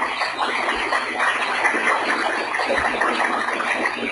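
Audience applauding steadily, a dense crackle of many hands clapping.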